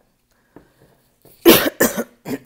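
A woman coughing twice in quick succession, loud and sudden, starting about one and a half seconds in.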